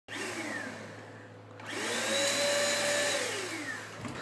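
An electric appliance motor winding down. About a second and a half in it starts again, spins up to a steady whine, and winds down near the end.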